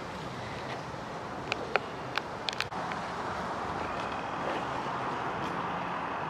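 Steady wind noise on a phone microphone outdoors, swelling slightly in the second half, with a few faint clicks around two seconds in.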